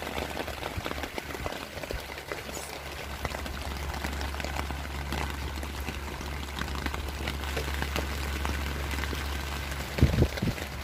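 Rain falling on a tent, heard from inside as a steady patter of many fine drops, with a steady low hum underneath.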